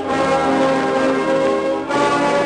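Band music played back from a 1930 Victor 33⅓ rpm demonstration record on a turntable, with held notes changing every fraction of a second.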